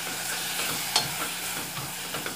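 Sautéed dried beef, onion and tomato sizzling in an aluminium pot as the reserved water from scalding the beef is poured in and stirred with a spatula, with a brief scrape about a second in.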